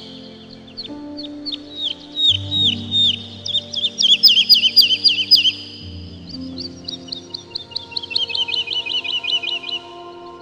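A songbird singing in rapid runs of short, falling chirps, loudest around the middle, over soft held music chords that shift every few seconds.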